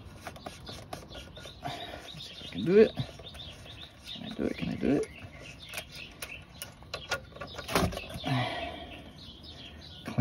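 A few short wordless vocal sounds of effort, with a few light metallic clicks, as the oil drain plug is worked out of the oil pan by hand.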